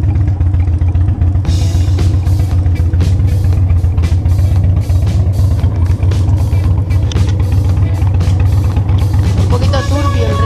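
Motorcycle engine running steadily under way, a low constant drone, with music playing over it; a drum beat comes in about one and a half seconds in.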